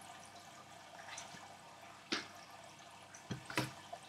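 Plastic DVD and Blu-ray cases being handled and set down: three short clicks and knocks, two close together near the end, over a faint steady hiss of room noise.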